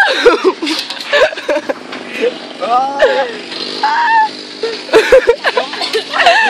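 Several young people's voices calling out and chattering excitedly, with rising and falling shouts.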